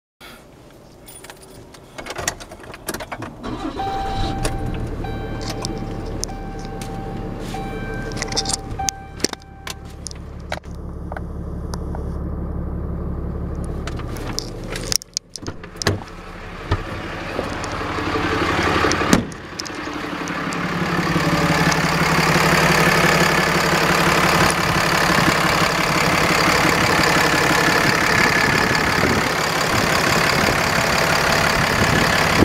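2012 RAM 5500's Cummins 6.7L diesel started and idling. It is heard first inside the cab, with keys jangling and a steady tone for a few seconds, then louder and steadier beside the engine with the hood open.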